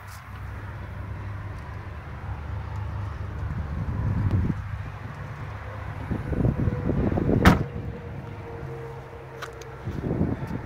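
Rear hatch of a 2015 Mini Cooper Countryman shut with one sharp, loud slam about seven and a half seconds in, over a steady low rumble.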